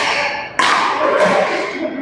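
Badminton rackets hitting a shuttlecock during a rally: a lighter hit right at the start, then a louder, sharper hit about half a second later. Each hit rings on in the reverberant hall.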